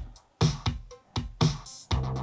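Programmed hip-hop beat playing back: sharp drum hits with deep synth bass and conga percussion, with a short dropout just after the start before the groove comes back in.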